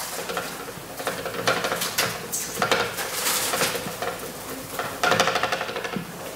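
Marker pen writing on a whiteboard: scratchy strokes in several bursts, the loudest about a second and a half, three seconds and five seconds in.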